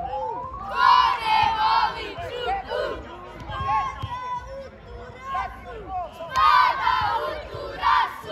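A group of young boys shouting a football cheer in unison, in two loud bursts, about a second in and again about six seconds in, with scattered single shouts between.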